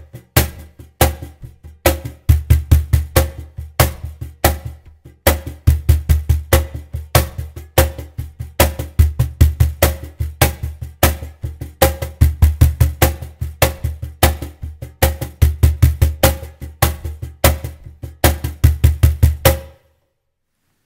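Cajon played by hand in a samba-reggae groove: fast caixa-style slaps with four bass tones closing each phrase. The groove stops just before the end.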